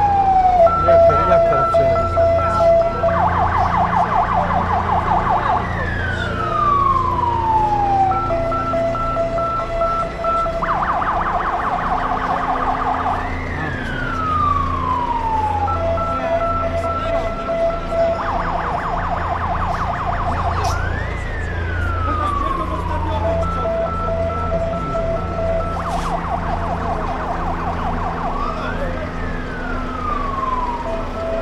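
A siren cycling through a repeating pattern about every seven and a half seconds: a long falling wail, then a pulsed two-note tone, then a rapid warble, heard four times over. A low pulsing hum runs beneath it.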